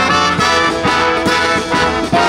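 Live brass band of sousaphones, saxophones and trumpets with snare and bass drum playing a Christmas medley. Sustained brass and sax chords run over a steady drum beat of a little over two strikes a second.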